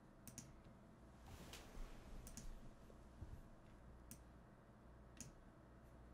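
Near silence with a few faint computer mouse clicks, a quick pair about a third of a second in and single clicks spread through the rest.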